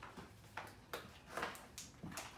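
Faint scattered clicks and rustles, about four in two seconds, from small objects being picked up and handled.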